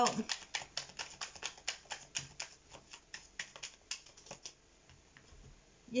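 Tarot cards being thumbed through by hand: a rapid run of light clicks, several a second, that thins out and stops about four and a half seconds in.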